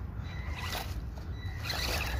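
Small electric RC crawler truck driving, its motor and gearing giving a faint steady whine, with tyres scrabbling through dry leaves that grows louder in the second half.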